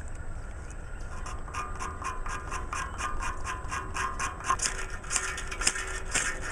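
Steel scraping along a ferrocerium rod in quick, even strokes, about three or four a second, throwing sparks onto fatwood shavings. The strokes start about a second in and grow louder near the end.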